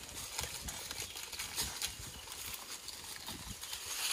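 Irregular crackling and rustling of dry leaf litter underfoot as gray langur monkeys and a person move across the forest floor.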